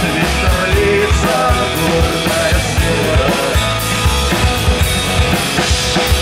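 A folk-rock band playing an instrumental passage live: drum kit with bass drum, bass guitar and electric guitars, loud and steady.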